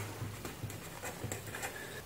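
Faint scratching of a felt-tip marker writing on paper, a few short strokes over a low steady hum.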